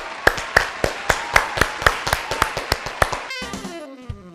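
Hands clapping in a steady rhythm, about four claps a second, over faint music. Near the end the clapping stops and gives way to a falling music sting.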